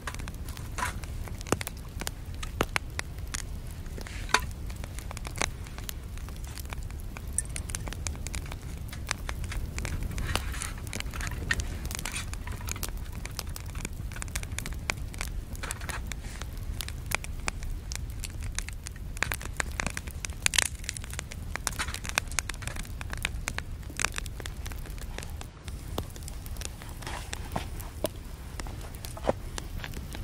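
Twigs burning in a small folding metal wood stove, crackling with sharp pops scattered irregularly throughout, over a steady low rumble.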